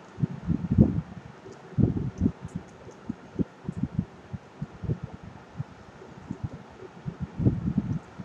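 Stylus strokes and taps on a pen tablet while handwriting, heard as a run of short, irregular low thumps.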